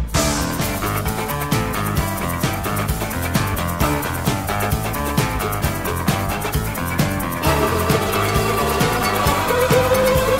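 Fast country-rock band instrumental with drums, bass and electric guitar driving a steady beat. About seven and a half seconds in, a fiddle enters with sustained, sliding notes.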